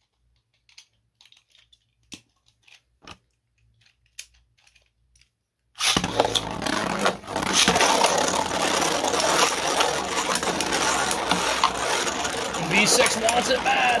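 Faint clicks, then about six seconds in two 3D-printed Beyblade spinning tops start suddenly and spin in a plastic stadium, a loud, continuous rattling and grinding of plastic on plastic with many small knocks.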